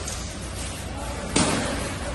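Armoured buhurt fighters clashing, with one loud, sharp hit about two-thirds of the way in that rings briefly in a large hall, over a steady background of voices.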